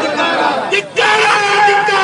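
A crowd of protesters shouting slogans together, many men's voices at once. There is a short break a little under a second in, then a long-held shout.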